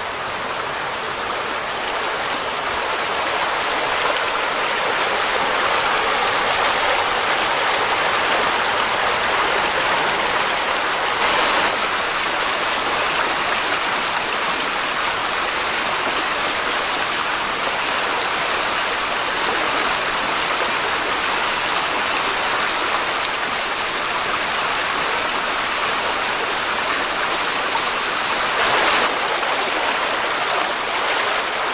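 Shallow rocky creek rushing and babbling over a riffle of stones, a steady, unbroken sound of running water.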